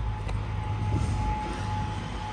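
Kenworth semi-truck's diesel engine idling steadily, a low rumble with a thin steady tone over it, while its air system fills the air-suspension airbags.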